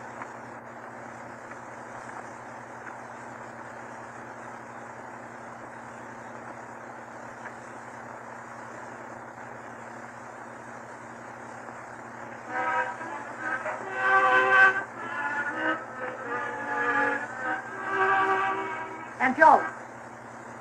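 Steady hiss and low hum from the surface of a 1929 Vitaphone sound-on-disc record. About twelve seconds in, a louder series of held pitched notes starts, several sounding together and changing pitch about every half second, lasting some six seconds.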